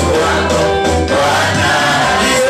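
A live gospel praise song sung by a group of male and female singers into microphones, over steady instrumental accompaniment.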